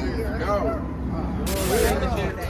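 Several men's voices calling out in a group, with a short, loud hiss about one and a half seconds in.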